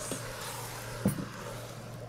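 Chili of sweet potatoes, peppers and crushed tomatoes being stirred in the metal inner pot of an electric pressure cooker on its heating setting, a faint sizzle with one short knock of the utensil about a second in.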